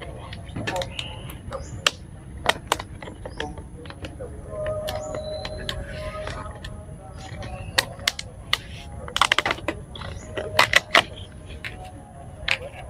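Plastic bags crinkling and food containers clicking and knocking as they are handled on a table, in irregular bursts, with a busier flurry of clicks about nine seconds in and again near eleven.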